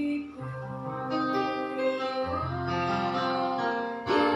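Accompaniment music led by acoustic guitar, playing held notes and chords.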